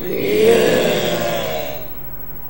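A long drawn-out cry of voices together, swelling quickly to its loudest about half a second in, then fading away over the next second or so.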